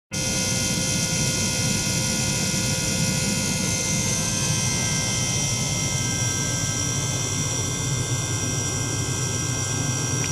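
Small ultrasonic cleaning bath running with a probe in its water, with a small liquid-circulation pump alongside: a steady hiss and hum with a high whine over it.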